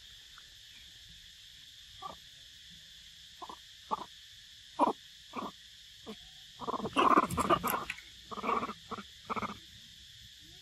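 Long-tailed macaques making short grunting calls while feeding, building to a dense burst of chattering about seven seconds in, which is the loudest sound. A steady high drone of insects runs underneath.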